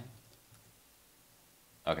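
Near silence: room tone, with one faint computer-keyboard click about half a second in as a file is saved.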